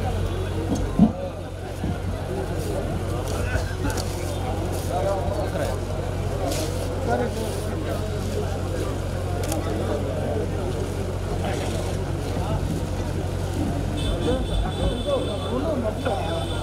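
Indistinct chatter from many people over a steady low hum.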